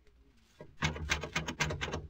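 Radio sound effect of a locked wooden door being knocked and rattled: a quick run of sharp wooden knocks that starts about half a second in and continues to the end.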